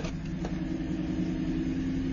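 Lamborghini Huracán's V10 engine idling steadily, a low even tone, with a single short click about half a second in.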